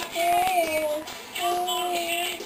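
A young child's voice making long, steady, engine-like vocal tones, imitating monster truck sound effects: two held notes with a short break between them.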